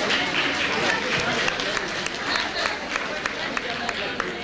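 Crowd of people talking at once, with scattered hand claps at an irregular pace, about three a second.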